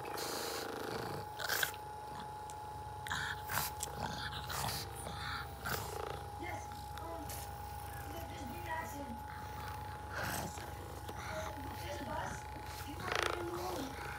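Percussion massage gun running steadily: a constant motor hum with the fast buzz of its hammering head, with a few brief louder sounds over it.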